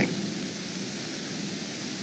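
A steady, even hiss on the soundtrack of a film clip played over a video call, with no dialogue.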